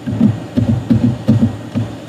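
Computer keyboard being typed on: a quick, irregular run of dull keystrokes, several a second, as a password is entered.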